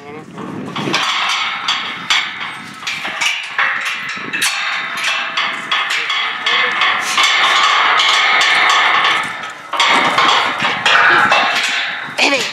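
Steel corral panels being struck metal on metal: rapid, almost continuous clanging strikes with a ringing tone, and a short break near the end.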